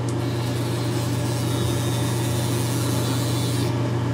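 Gillette Fusion5 Power razor's battery-driven vibration motor humming steadily while its five blades scrape through lathered stubble. A hiss comes in near the end.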